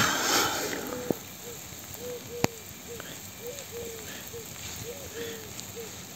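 Fingers scraping and digging into wet garden soil, a short scratchy rustle at the start. A faint steady hiss from the watering hose's spray runs underneath. A run of about a dozen short, repeated piping notes sounds in the background.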